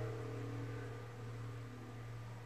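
Low ringing tone of a single note struck just before, fading slowly: the higher overtones die away first while a steady low hum lingers.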